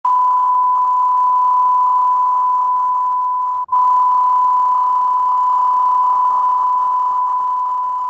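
Steady 1 kHz line-up test tone accompanying broadcast colour bars, cut for an instant about three and a half seconds in and slowly getting quieter toward the end.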